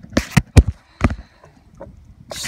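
A quick run of sharp knocks, four in the first second, then a couple of faint taps.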